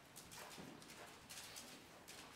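Faint, soft hoofbeats of a horse walking on the sand footing of an indoor arena, muffled and irregular.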